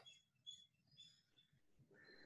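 Near silence: room tone, with a few faint, short high-pitched chirps about half a second and a second in.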